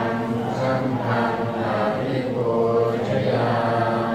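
Buddhist chanting: a low, near-monotone recitation held at a steady pitch, running on without a break.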